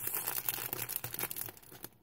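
A small plastic packet crinkling and crackling as fingers work at it to get it open, the crackles dying away near the end.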